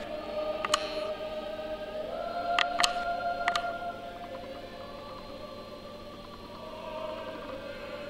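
Choral music with long held voices, and four sharp clicks: one about a second in and three more around three seconds in.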